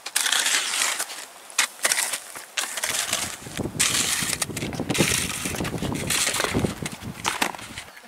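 Footsteps crunching in packed snow close to the microphone, a quick irregular series of crunches as someone walks up a snowy trail.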